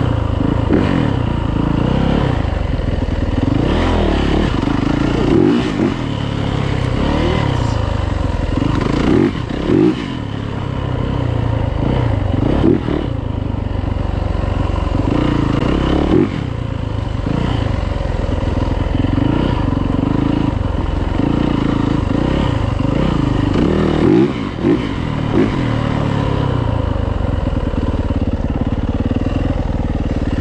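Yamaha YZ450F single-cylinder four-stroke dirt bike engine, heard from on the bike, revving up and down over and over as the throttle is opened and closed, rising and falling in pitch every second or two.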